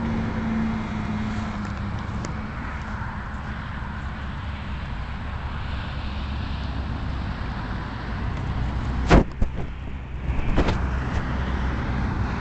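Steady low outdoor rumble, with a sharp knock about nine seconds in and a few lighter knocks after it.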